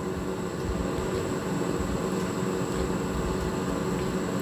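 Steady room noise between spoken lines: a constant low hum and hiss with a faint thin high whine, and no distinct sound events.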